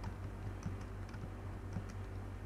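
Computer keyboard being typed on: a few separate keystrokes about half a second apart, over a steady low hum.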